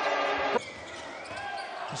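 Basketball game audio: loud arena noise that cuts off abruptly about half a second in, then quieter court background with a ball bouncing on the floor near the end.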